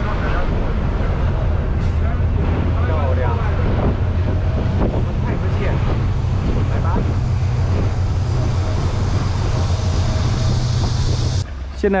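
Steady low engine drone inside a moving bus, with passengers' voices in the background. It cuts off a little before the end.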